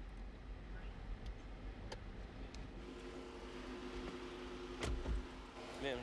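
Police car idling with a low rumble, a steady hum coming in about halfway, a few light clicks, and a heavier clunk just before the end as the cruiser's door is opened.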